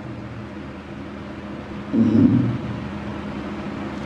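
A pause in speech: steady hiss and a low hum from the microphone line, with one short, low voice sound about two seconds in.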